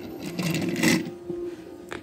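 A plastic toy train engine being handled and moved by hand: a rattling scrape about a second long, with a sharp click near the end.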